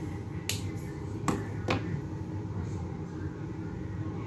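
Three sharp plastic clicks in the first two seconds, the last two close together: the cap of a dual brush marker being pulled off and snapped back on.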